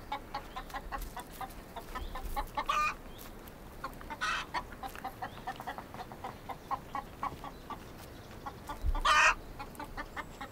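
Chicken clucking: a steady run of short clucks, about three a second, broken by three louder squawks, the last and loudest near the end.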